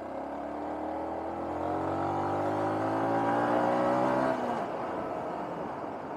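Motorcycle engine accelerating, its pitch rising steadily for about four seconds and then dropping away suddenly as the throttle is closed, leaving wind and road noise.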